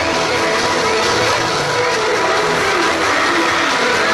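Loud pop music from an arena's sound system, with a crowd screaming and cheering under it throughout.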